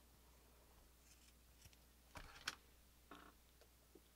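Faint snips of scissors cutting cotton drawstring cord, a few short cuts with the two clearest close together about two seconds in.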